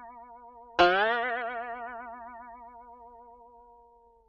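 Outro music sting: a twangy plucked note with a wobbling vibrato, the tail of one note fading as a second identical note is struck about a second in and dies away over about three seconds.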